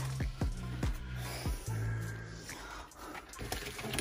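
Background music with a low, slow-moving bass line, with a few light knocks and clinks of boxes and jars being handled.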